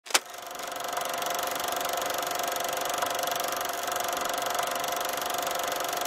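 Film projector running: a click at the start, then a steady mechanical whirr with fast, even clicking.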